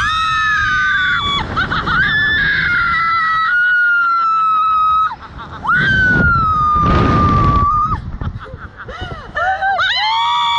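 Two women screaming on a slingshot launch ride, long held screams with slowly falling pitch that break off about five seconds in and near eight seconds, then start up again near the end.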